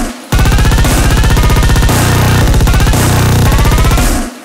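Breakcore electronic track: after a brief dropout at the start, a dense barrage of very fast chopped drum hits runs under synth lines that glide in pitch, with a deep held bass note about halfway through and again near the end.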